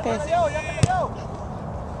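Voices in the first second, with one sharp knock just under a second in, then steady outdoor noise.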